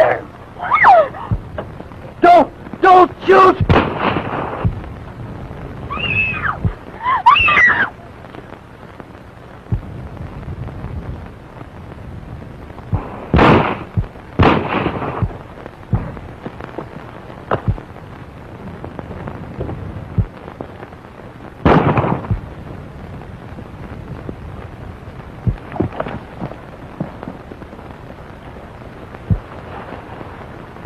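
Old optical film soundtrack with steady hiss: short shouts and cries of a struggle, then sudden gunshots, two about a second apart around the middle and a third some eight seconds later.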